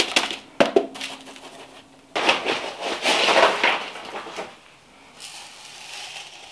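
Loose semi-hydro substrate granules being scooped by hand and poured into a plastic pot: a few short rattles near the start, then a longer crackling rattle of grains pouring and settling for a couple of seconds, tailing off to a faint rustle.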